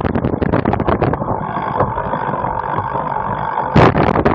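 A cyclocross bike jolting and rattling over a rough dirt course, heard through a camera mounted on the bike. About a second in the clatter eases into a steadier rolling sound with a thin, steady whine as the rider stops pedalling and slows, and a loud thud comes near the end.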